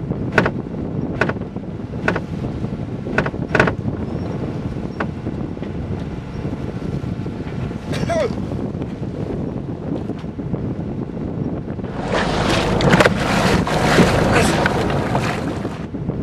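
A sailboat's winch clicking sharply as its handle is cranked, a click about every half second over the first few seconds, over steady wind and water noise. A short vocal cry comes about halfway through, and a louder rushing noise swells in near the end.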